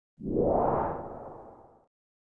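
Intro whoosh sound effect for a logo reveal: one swell that starts a moment in, peaks quickly and fades away over about a second and a half.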